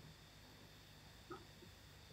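Near silence: room tone, with one faint short sound a little past the middle.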